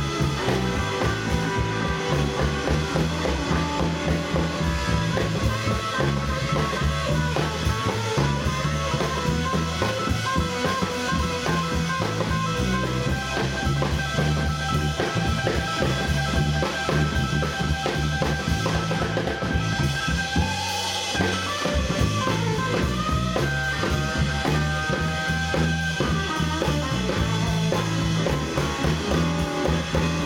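Live blues trio playing an instrumental passage: an electric guitar solo over a drum kit and an upright bass.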